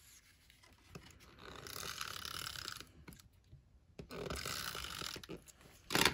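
Adhesive tape runner drawn along a paper strip in two long scratchy strokes, laying adhesive before the strip is stuck down.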